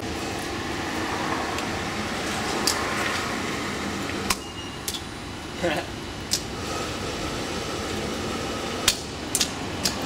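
Gasoline being pumped from a gas-station pump nozzle into a car's tank, a steady rushing hum, with several sharp clicks in the second half. The fill stops very quickly, after only about a gallon.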